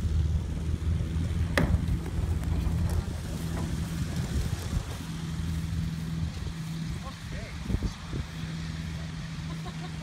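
Tow plane's piston engine and propeller running with a steady drone at takeoff power for a glider aerotow launch, loudest in the first few seconds and then fading as it moves away down the runway. There is one sharp click about a second and a half in.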